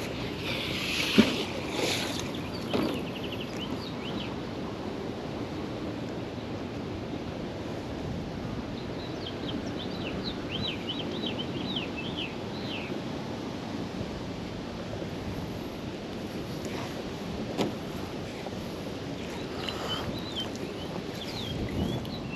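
Steady outdoor wind and water noise while a magnet is thrown out on a rope and dragged back along the bottom. There is a sharp knock about a second in, as the magnet lands, and a run of short high chirps in the middle.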